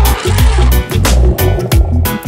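Background music with a steady drum beat over a deep bass line, with a rising hiss-like swell near the start.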